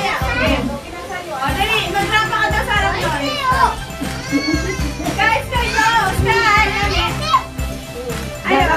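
Children's voices calling and chattering excitedly, with some adult voices, over background music.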